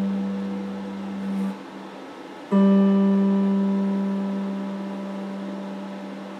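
Electric guitar played slowly: a ringing note fades out and breaks off early on, then a fresh note is struck about two and a half seconds in and left to ring, dying away slowly.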